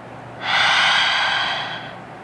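A woman's long, breathy exhale through the open mouth, an audible 'haaa' sigh of release. It starts about half a second in and fades away over about a second and a half.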